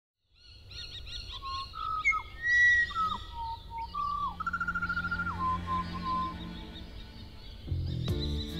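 Several birds calling together: chirps, whistles that slur downward and a rapid trill, over a low steady rumble. Music begins near the end.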